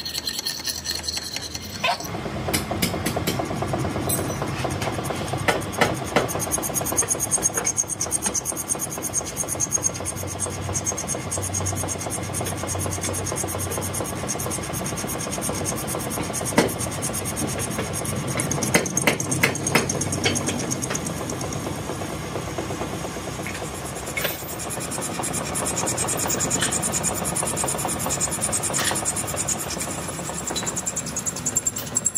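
Metal lathe running with a welded steel pinion shaft spinning in it: a hand file rasps against the turning shaft for the first couple of seconds, then a cutting tool turns down the welded section, with scattered short clicks over a steady cutting noise.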